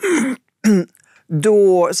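A woman clears her throat: one strong rasp right at the start, then a shorter one just after.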